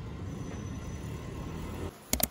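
Steady low rumble of distant city traffic, with outdoor air noise. It cuts off just before the end.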